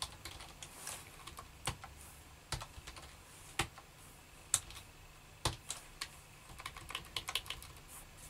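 Typing on a computer keyboard: single keystrokes spaced about a second apart, then a quicker run of keys near the end.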